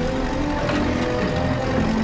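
Heavy engine of a yellow rail track-maintenance machine running steadily as it moves along the track, a dense low rumble with a few held tones over it.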